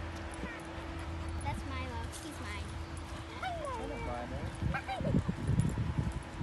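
Dogs whining and yipping in short calls that glide up and down in pitch, with voices in the background. Near the end there are close rustling thumps as a dog moves against the microphone.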